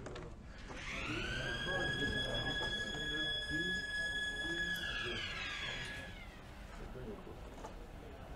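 Beam Imminent Warning siren of the Proton Synchrotron: a single tone that winds up about a second in, holds steady for several seconds, then winds down and stops about six seconds in. It signals that the machine has been switched to beam mode and beam is about to be sent in.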